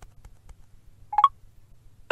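A brief two-note rising electronic beep about a second in, from the iPhone's VoiceOver screen reader, as a two-finger triple tap opens its Item Chooser.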